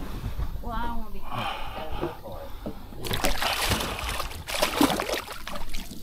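Hooked redfish thrashing and splashing at the surface beside the boat, loudest from about halfway through for two to three seconds. A brief voice sounds about a second in.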